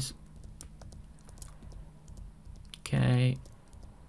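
Scattered light clicks of computer keys, tapped to step a chart forward bar by bar, over a low steady hum. A short voiced 'mm' from a man about three seconds in.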